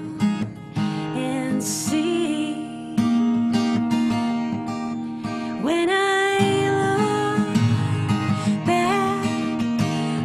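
A woman singing to her own strummed cutaway acoustic guitar. About halfway through she rises into a long held note.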